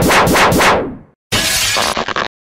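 Cartoon sound effects: a rapid run of sharp hits, about four a second, that fades out, then after a brief gap a harsh burst of crashing noise that cuts off suddenly.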